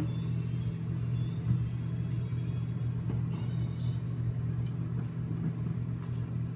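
Microwave oven running with a steady low hum, with a sharp knock about a second and a half in and a few light clicks later.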